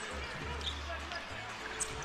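Faint basketball arena ambience during live play: a low crowd murmur and court noise, with a low steady hum for about the first second.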